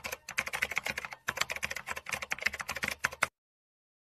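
Computer keyboard typing: rapid, irregular key clicks many times a second, stopping abruptly a little over three seconds in.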